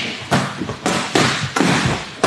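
Boxing-glove punches landing on a blocking partner's gloves in a quick combination: about four sharp thuds roughly half a second apart.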